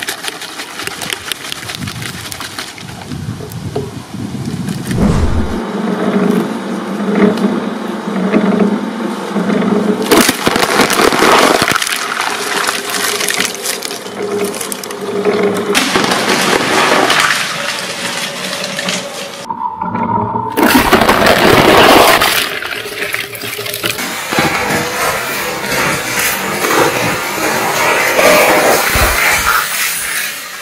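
Twin-shaft shredder grinding full plastic soda bottles, with crunching and cracking plastic as the bottles burst and the fizzy drink gushes and sprays out. The sound breaks off briefly about two-thirds of the way in.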